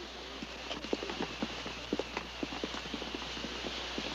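Footsteps of several people walking on hard pavement: many irregular clacks, several a second, over a steady hiss and low hum.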